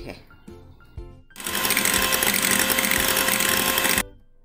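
Electric hand mixer switched on about a second in, its motor running with a steady whine as the beaters whip non-dairy cream, then stopping suddenly at the end.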